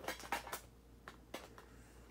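CD album packaging and its inserts handled by hand: a quick cluster of short clicks and rustles in the first half second, then two more single clicks a little past the middle.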